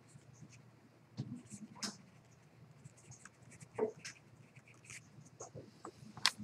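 Faint room noise: scattered small, irregular clicks and rustles over a low steady hum, a little louder about a second in and again near four seconds.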